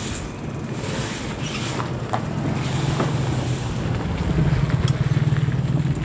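A motor vehicle's engine close by, a low, pulsing hum that grows louder through the second half as a car passes. It sits over the steady rattle and road noise of a bicycle on a rough gravel street, with scattered sharp clicks.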